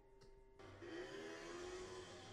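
Faint soundtrack audio from an anime episode. A whirring effect with a slowly rising tone comes in about half a second in, after a moment of near silence.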